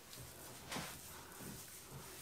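Faint, soft rubbing of a damp cloth flannel being pressed and wiped over the face to take off a face mask, with a slight swell a little under a second in.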